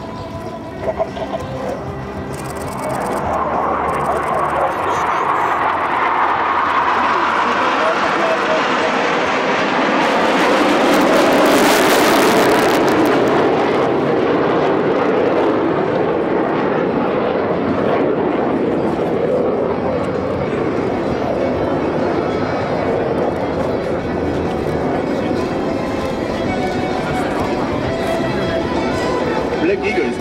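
Formation of KAI T-50B Golden Eagle jets passing overhead: jet engine noise builds over several seconds and peaks with a loud, hissing rush about ten to thirteen seconds in, then settles to a steady rumble as the formation moves off.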